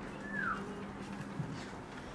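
Whiteboard marker writing letters: one short falling squeak of the felt tip about half a second in, then faint scratching strokes, over a faint steady hum.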